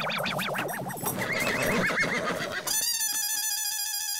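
Sitcom background music: a busy, wavering comic cue that gives way about two-thirds in to a held chord of several notes with a gentle waver.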